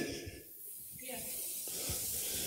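Faint steady hiss of microphone noise and room tone, with a brief faint trace of voice about a second in.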